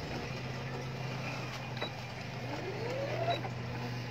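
Brother electric sewing machine running at a steady speed as fabric is fed under the needle, its motor giving a steady low hum.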